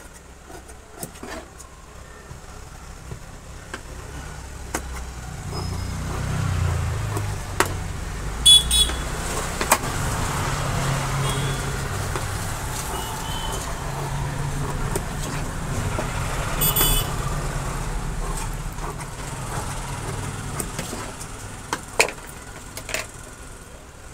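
A motor vehicle's low engine rumble that swells about four seconds in and holds, with two short high-pitched toots about eight seconds apart. Over it, sharp clicks from tailor's scissors snipping cloth.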